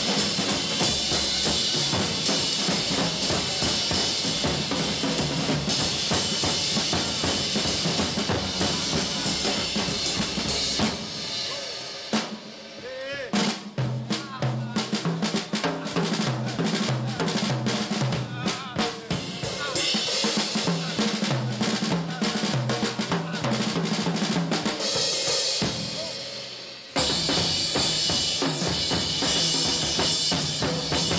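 Drum kit solo: fast, dense playing on the drums and cymbals, dropping off about eleven seconds in to sparser strokes on the snare and toms in a repeating pattern, then crashing back in at full loudness about three seconds before the end.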